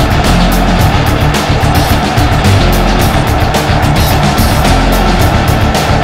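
Loud background music with a steady, driving drum beat.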